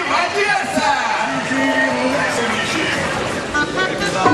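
Crowd of spectators in a large hall calling out and shouting, many voices overlapping.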